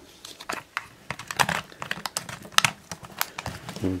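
Irregular small plastic clicks and taps as a 35mm film cartridge is set into a compact camera's film chamber and the film leader is handled.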